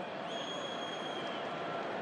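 Football stadium crowd noise, a steady murmur. A thin, steady high whistle tone sounds over it for about a second near the start.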